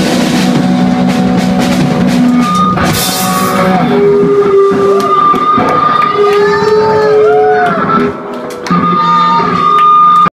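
Live punk rock band playing loudly: held electric guitar notes that bend and waver in pitch over drum hits and cymbal crashes. The sound dips briefly about eight seconds in, then comes back full.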